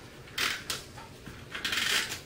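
Permanent-adhesive tape runner being drawn across cardstock to lay tape, with a short stroke about half a second in and a longer one near the end.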